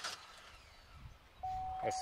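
After a second and a half of near quiet, the Chevy Equinox sounds a single steady tone as its ignition key is put back in and turned on, lasting about two seconds.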